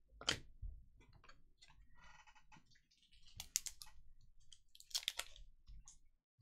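Trading cards and foil card packs being handled on a table: faint rustles and scattered short clicks and snaps, a sharp one about a third of a second in and small clusters around three and a half and five seconds in.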